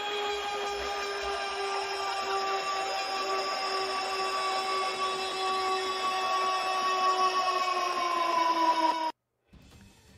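Goal-celebration horn sound effect: one long, steady horn blast that sags slightly in pitch near the end and then cuts off abruptly.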